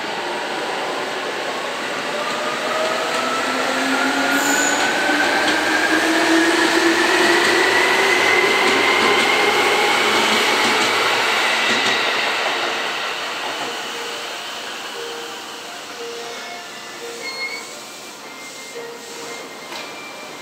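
Seibu 2000-series electric commuter train pulling away from a station. Its traction motors whine in a slowly rising pitch as it gathers speed over about ten seconds, over the rumble of wheels on rail. The sound then fades as the train leaves.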